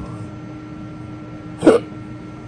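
A man's single sharp hiccup about one and a half seconds in, over a steady faint hum. The hiccups are a persistent symptom of his stroke.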